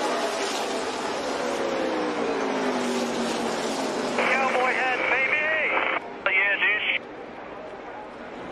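A NASCAR Xfinity stock car's V8 engine running on the track, its pitch falling steadily over the first few seconds. About four seconds in, a thin, radio-sounding voice comes in over team radio in two short stretches, cutting out about a second before the end.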